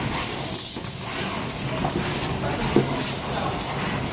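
Automatic box-wrapping machine running: a steady mechanical hum and whir from its conveyor and drives, with occasional clacks from the mechanism, the sharpest about three seconds in.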